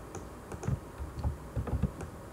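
Computer keyboard typing: several separate, irregular keystrokes with dull thumps.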